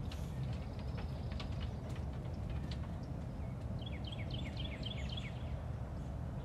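Steady low outdoor rumble, with a bird calling a quick run of about eight short falling chirps between about four and five seconds in. A few faint clicks come in the first two seconds.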